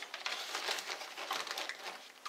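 Rustling and crinkling of plastic packaging being handled, an uneven run of small crackles.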